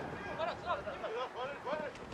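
Men's voices shouting a string of short, indistinct calls.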